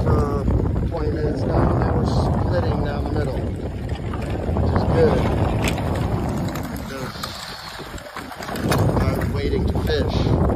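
Wind buffeting a phone microphone over the grinding and crunching of lake ice sheets being pushed against the shore, a dense, uneven rumble that eases for a moment around eight seconds in.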